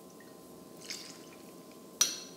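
Ginger beer poured faintly from a glass bottle into a metal jigger, with one small tick about a second in.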